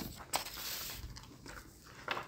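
Small handling noises in a quiet room: a couple of sharp clicks in the first half second, then a brief rustle, over low room tone.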